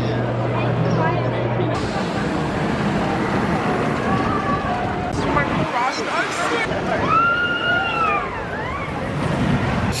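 Steel roller coaster train (Cedar Point's Maverick) running along its track amid steady crowd chatter. About seven seconds in there is a long yell that rises and falls.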